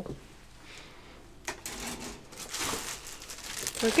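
Crinkly rustling and small clicks of plastic model-kit parts and their packaging being handled, starting with a click about a second and a half in and continuing irregularly.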